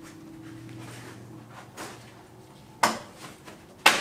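Two sharp knocks about a second apart near the end, over a low steady hum in a small room.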